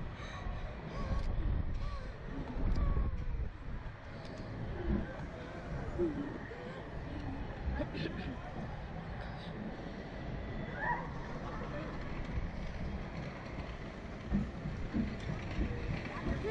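Wind buffeting the microphone of a camera on a Slingshot reverse-bungee ride capsule as it swings and tumbles in the air, a continuous low rumble. A few brief, faint voice sounds from the riders come through it.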